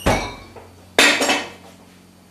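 A knock right at the start as a small fridge door shuts, then about a second in a metal moka pot is set down hard on a table, a clank followed by a brief rattle.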